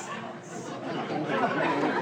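Comedy-club audience reacting to a joke: many voices murmuring and chattering over one another, with scattered laughter.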